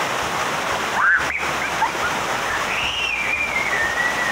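Stream water rushing over rocks in a steady, even rush. Two thin whistles sound over it: a short rising one about a second in, and a longer one that slides slowly down in pitch in the second half.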